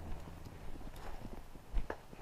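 Footsteps in fresh snow: faint, irregular crunching, with one louder thump near the end.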